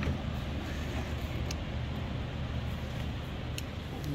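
A steady low hum with a couple of faint, short clicks.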